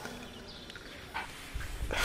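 Faint outdoor background noise with a short animal call about a second in, and a low rumble near the end.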